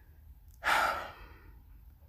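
A man's single breathy sigh, an exhale with no voice in it, about half a second in and lasting about half a second.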